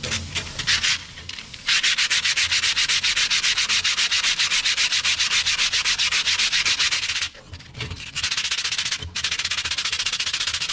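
Sandpaper rubbed by hand over a perforated metal sheet in fast, even back-and-forth strokes, a rasping hiss. After a few irregular strokes at the start, the rhythm settles; it pauses for under a second about three-quarters of the way through, then picks up again.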